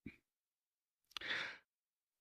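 A man's short, soft in-breath through the mouth, about a second in, taken in a pause in his speech.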